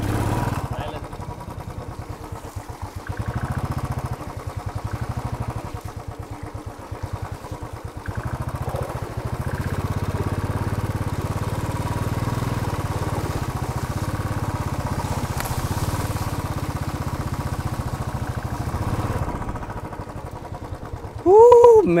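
Royal Enfield Classic 350's single-cylinder four-stroke engine running at low speed off-road through mud, with its firing pulses clearly separate. The throttle opens and closes: louder stretches run from about 3 to 5 s and from about 8 to 19 s. Near the end a voice gives a brief exclamation.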